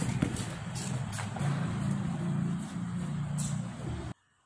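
A steady low motor hum, like an engine running nearby, over outdoor background noise, with a few faint clicks.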